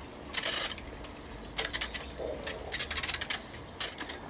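Water sprayed in several short hissing bursts over a seed tray to dampen down the compost and settle its top dressing of vermiculite.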